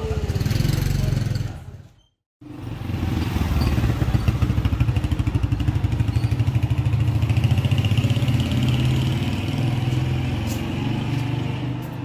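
A small motorcycle engine running close by, a steady low putter with a fast pulse. The sound cuts out briefly about two seconds in.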